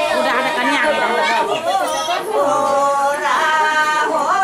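Several women's voices singing an unaccompanied folk song, with long held notes, over overlapping chatter of a crowd.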